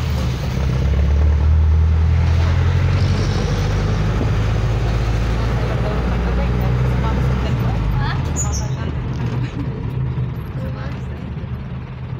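Engine and road rumble of a moving passenger vehicle heard from inside the cabin, steady and loud, easing off about eight seconds in.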